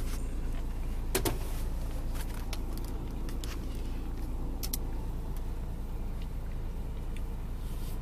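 A 2002 BMW E46 320d's four-cylinder turbodiesel idling steadily with the heater on, heard as a low, even hum inside the cabin. A few sharp clicks, about a second in and again near five seconds, come from the diagnostic cable being handled.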